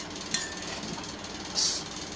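A glass adapter being fitted into the stopper of a glass reagent bottle: one light glass clink with a short ring about a third of a second in, then a brief high hiss about a second later, over a steady background hum.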